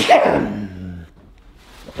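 A man clears his throat with a rasp and then lets out a low, drawn-out groan of about a second, a weary sound from someone who is exhausted.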